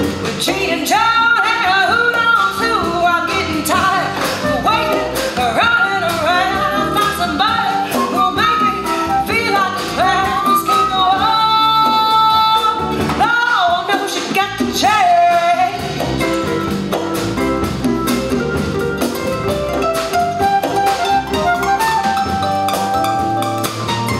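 Live jazz combo playing: a woman singing over pedal harp, upright bass and drum kit, with a flute in the band. The voice drops out about two-thirds of the way through and the instruments carry on.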